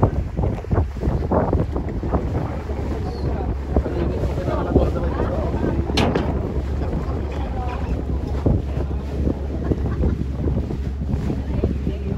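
Wind buffeting the microphone on a moving sailboat, gusting unevenly over a steady low rumble, with one sharp click about halfway through.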